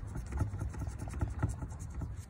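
Scratch-off lottery ticket being scratched: a run of short, rapid scraping strokes on the ticket's coating, over a low steady hum.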